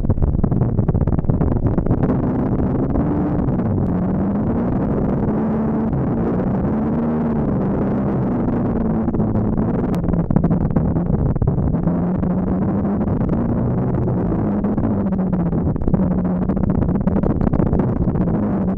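Adventure motorcycle engine running along a gravel track, its pitch rising and falling as the throttle is opened and closed, with wind and tyre noise on the camera microphone.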